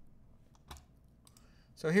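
A few faint, scattered clicks from computer input being worked, then a man starts speaking near the end.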